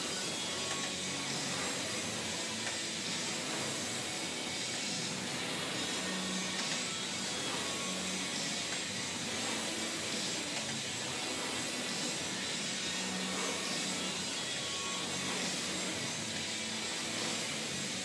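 Concept2 rowing machine's air-resistance flywheel fan whooshing steadily under hard rowing.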